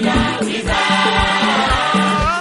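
African gospel song: a choir sings over a steady drum beat, holding one long chord from about half a second in.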